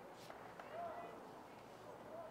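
Faint open-air stadium ambience with distant voices calling out briefly.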